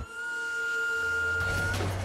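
A steady high electronic tone held for about a second and a half, then a deep engine rumble from an animated fire engine setting off, which comes in about a second in and carries on.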